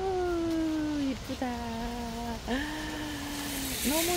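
A woman's voice holding four long sung notes in a slow tune, each about a second, with a short upward slide into each note.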